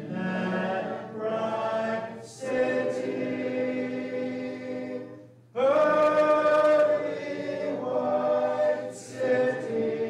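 A congregation singing a hymn unaccompanied, many voices holding long notes together. There is a short break between phrases about five seconds in, and the next phrase comes in louder.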